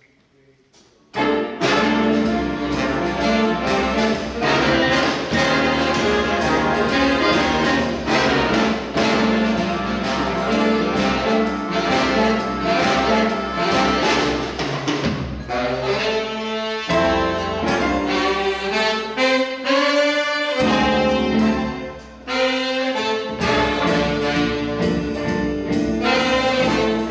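Jazz big band, brass and saxophone sections over piano, guitar, bass and drums, coming in together about a second in and playing a loud, full brass-led arrangement. The band drops away briefly for a moment near the end before coming back in.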